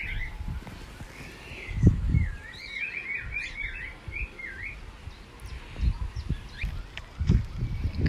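A songbird singing outdoors: short phrases of quick, repeated warbling chirps, one right at the start and a longer run of about half a dozen notes around three seconds in. A few low thumps sound under it, near two seconds and again late on.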